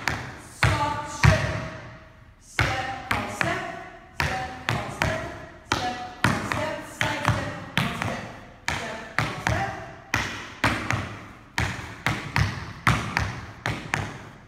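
Tap shoes striking a studio floor in quick rhythmic clusters of sharp taps, each group ringing briefly in the room, as a beginner tap routine is danced.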